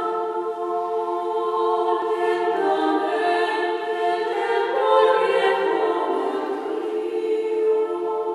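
Mixed choir singing a cappella in several parts, holding long chords that move to new harmonies every few seconds, in a reverberant stone chapel.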